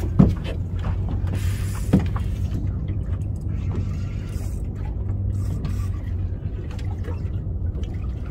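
Steady low hum of a boat's outboard motor idling, with the mechanical whirr of fishing reels being cranked against hooked fish. Two sharp knocks come in the first two seconds.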